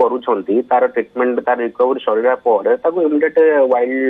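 Speech only: a man talking without pause, his voice thin and narrow-band as if over a phone line.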